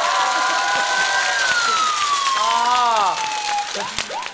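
Studio audience applauding and cheering, with voices calling out over it. A long drawn-out call falls slowly in pitch through the middle, and the clapping dies away near the end.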